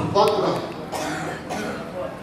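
A man's voice through a microphone and PA in a large hall, speaking in short, broken utterances. It trails off quieter in the second half.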